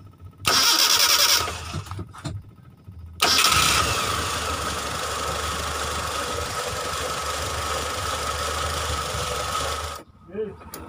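Mitsubishi Colt T120SS being started with its repaired starter motor: a loud burst of about a second, a short pause, then a second start about three seconds in. That start settles into steady engine running, which cuts off suddenly at the end.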